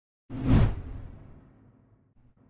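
A whoosh sound effect for a title-card transition. It comes in suddenly about a quarter second in, swells briefly and fades away over the next second.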